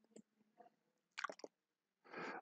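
Near silence, with a few faint short clicks about a second and a quarter in.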